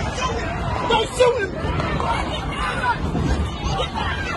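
Crowd of spectators in stadium bleachers, many voices talking and shouting at once in a commotion after gunfire, with one louder outburst about a second in.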